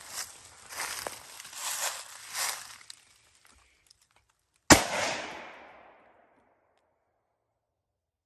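A single shot from a Remington 700 AAC-SD bolt-action rifle in .308 Winchester fitted with a muzzle brake, fired from the bench about two-thirds of the way in, with a sharp crack and a short echo trailing off over about a second and a half. It is one shot of a group while the rifle is being sighted in.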